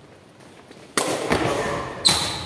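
Sepak takraw ball struck hard twice about a second in, two sharp smacks a third of a second apart that echo through the sports hall.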